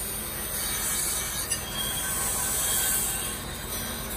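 Carbon-steel knife blade being ground against a spinning grinding wheel: a steady, high-pitched grinding screech of steel on abrasive, throwing sparks. A brief click about a second and a half in.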